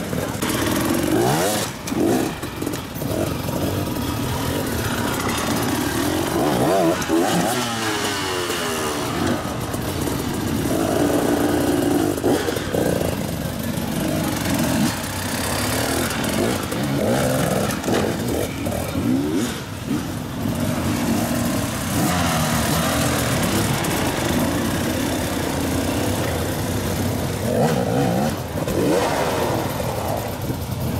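Enduro dirt bike engines, a Husqvarna among them, revving in short throttle bursts that rise and fall in pitch as the riders pick their way over rocks at low speed.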